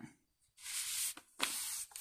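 Clear plastic protective sleeve sliding off a coloured-in colouring-book page: two soft, hissing rustles, each about half a second long.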